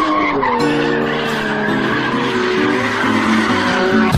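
A race car skidding on the track, its tyres squealing in a slowly wavering pitch.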